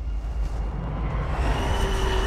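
Trailer sound design: a deep, steady rumble, joined a little over a second in by a thin, high, steady whine.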